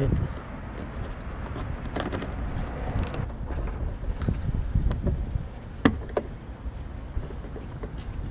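A few sharp plastic clicks from fingers prying a small interior light housing out of a car's trim panel, over a steady low rumble of handling noise.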